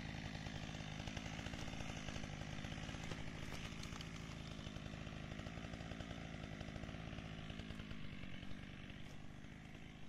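An engine running steadily at constant speed, its pitch easing slightly lower about eight seconds in.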